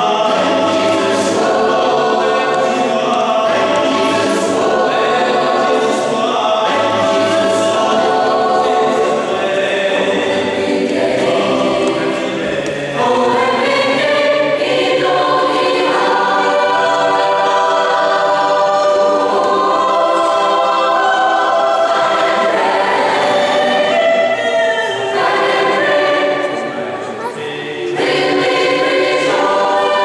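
Mixed choir of men's and women's voices singing together, with a brief softer passage about twelve seconds in and another near the end.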